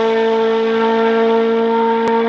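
A loud, sustained droning tone held at one steady pitch, rich in overtones, played as an outro sound effect over the closing title card.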